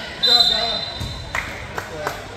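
A referee's whistle blows one steady, shrill blast of about a second, then a basketball bounces a few times on the hardwood gym floor.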